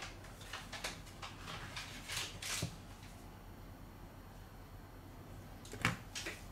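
Faint handling noise from gloved hands working test leads and an insulation tester's buttons: soft rustles and light knocks, with a sharper knock near the end.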